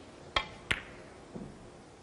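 Snooker shot: a sharp click of the cue tip striking the cue ball, then a second click about a third of a second later as the cue ball hits a red. A softer low knock follows about a second later.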